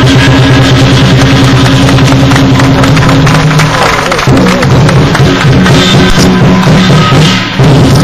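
Chinese lion dance percussion: a big barrel drum beaten in a fast, loud continuous pattern with clashing hand cymbals, accompanying the dancing lions.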